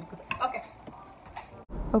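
A few faint, light clicks, then an abrupt cut into a woman talking near the end.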